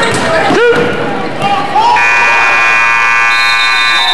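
Gym scoreboard buzzer sounding one steady blast of about two seconds, starting halfway through, over crowd voices and shouts.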